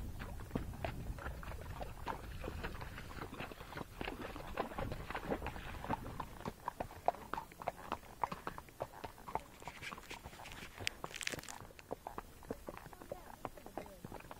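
Hoofbeats of Tennessee Walking Horses on a dirt trail: soft, irregular clip-clop knocks, several a second. A brief rustling hiss about eleven seconds in.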